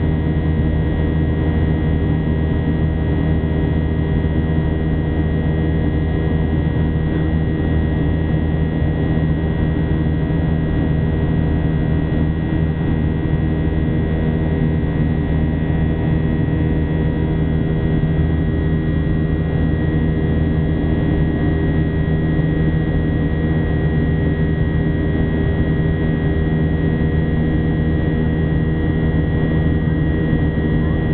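Boeing 737-800's CFM56-7B turbofan engines heard inside the cabin during the climb: a steady drone with several constant tones, unchanging throughout.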